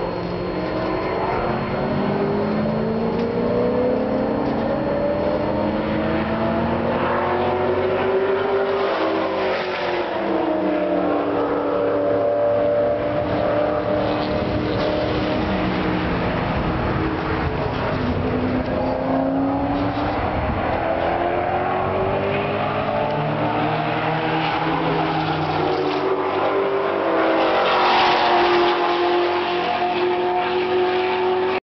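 Race cars, among them a Dodge Neon SRT-4, lapping a road course: several engines rev up and drop back through the gears at once, louder as they pass closest about 28 seconds in.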